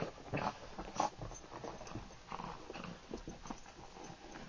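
Small dog rolling and wriggling on carpet, making a run of short, irregular scuffing and body noises, the loudest about a second in.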